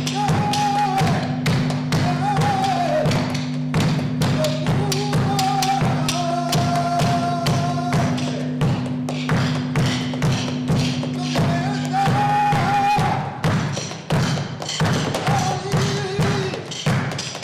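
Flamenco cante: a male singer holding long, wavering, ornamented notes over a steady low instrumental drone, with frequent percussive thumps and taps. The drone drops out about thirteen seconds in.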